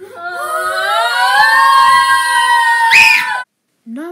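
A child's loud, long scream that rises in pitch at the start, holds steady with a brief sharper shriek near the end, and then cuts off abruptly.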